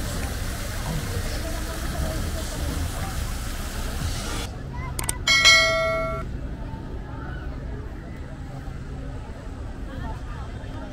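Fountain jets splashing steadily into a pool, cut off abruptly about four and a half seconds in; then a single bright ding, the loudest sound, rings about five seconds in and fades within a second over a low murmur of a crowd.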